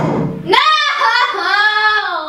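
A sharp tap right at the start as the thrown dart lands, then a boy's long, drawn-out, high-pitched cry of 'No!' in dismay, falling in pitch near the end.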